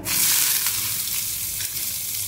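Chopped onions hitting hot mustard oil in a kadai, sizzling loudly as they go in, then settling into a steady sizzle that eases a little.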